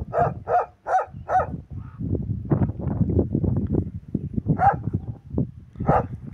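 Dog barking in a quick series of about six barks, roughly two and a half a second, over the first second and a half, then a low rumbling noise for a couple of seconds, and another single bark near the end.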